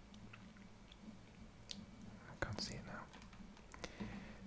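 Faint mouth clicks and lip noises with breaths close to a sensitive whisper microphone, a few short ticks scattered through, over a low steady hum.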